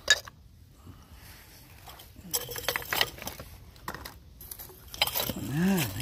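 Glass bottles clinking: one sharp clink right at the start, then a cluster of small clinks and rattles around the middle and again near the end, as dug-up glass bottles are handled and set down together.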